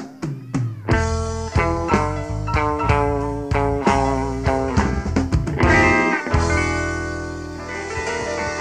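Live blues band playing an instrumental passage with guitar and drums: a sudden hit opens it, the full band comes in about a second later, and the chords are held over the last couple of seconds.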